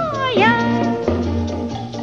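Swing-style dance-band pop music. A pitched lead line slides down in pitch at the start, then rises to a held note over the band and a steady bass.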